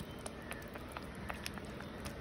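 Green curry paste frying in hot oil in a wok: a faint steady sizzle with scattered small pops and crackles.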